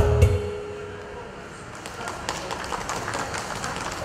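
Final held chord of a trot song's backing track fading out in the first second, followed by scattered hand claps from the audience.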